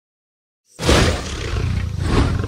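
A deep, loud creature roar sound effect for a flying dragon, starting suddenly about three-quarters of a second in after silence and loudest at its onset.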